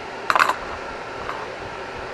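A single short metallic clink with a brief ring, like a small metal object knocking against a hard surface, followed about a second later by a much fainter click.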